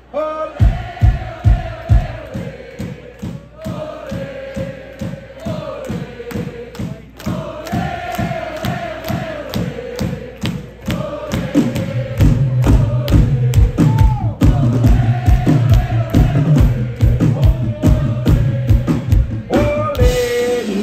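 Live band music: a steady drum beat with a held, wavering sung line over it, and a heavy bass line joining in about twelve seconds in.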